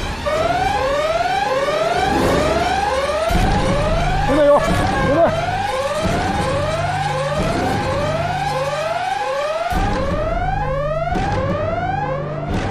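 A siren-like alarm effect, its pitch sweeping upward over and over at about two sweeps a second, over a steady low bass drone that joins about three seconds in and drops out briefly near the end. Two short vocal cries come about halfway through.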